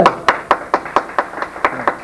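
Scattered handclaps from a small audience, a few sharp claps a second at an uneven pace.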